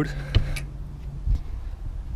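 A steady low mechanical hum, with one sharp click about a third of a second in and a softer knock near the middle.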